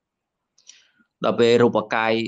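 A pause in a man's Khmer speech: near silence, a faint short hiss, then the talking resumes a little over a second in.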